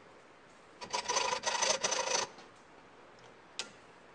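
A steel nail rivet in a wooden knife handle being trimmed with a metal hand tool: short, rapid strokes for about a second and a half. A single sharp click follows near the end.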